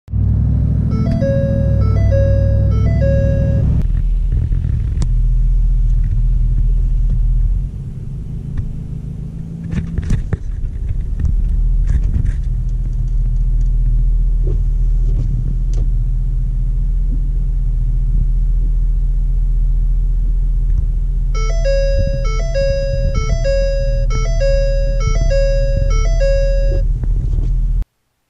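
Ford 6.7 L Power Stroke V8 turbo-diesel running with a steady deep rumble, heard from inside the cab, easing off slightly for a couple of seconds partway through. A repeating electronic chime sounds about every three-quarters of a second for the first few seconds and again over the last six.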